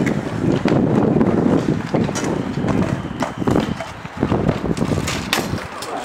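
Stunt scooter wheels rolling on concrete, a dense rough rumble over the first half, then sharp clacks and knocks in the second half.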